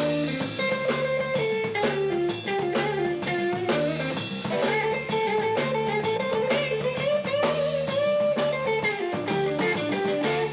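Live blues-funk band playing an instrumental passage. A Telecaster-style electric guitar plays a lead line of held notes that slide in pitch, over bass guitar and a drum kit keeping a steady beat.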